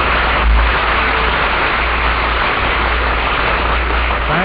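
Studio audience applauding, a dense and even clapping heard through the narrow, hissy sound of an old radio broadcast recording.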